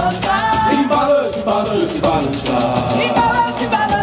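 Upbeat folk dance music with group singing over a fast, steady shaker rhythm.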